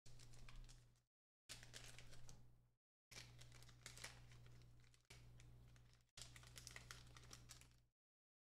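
Faint crinkling and crackling of a foil trading-card pack wrapper being handled as the cards are slid out, over a steady low electrical hum. The sound cuts out to silence several times.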